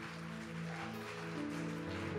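Soft background music of sustained keyboard chords, held notes changing every half second or so.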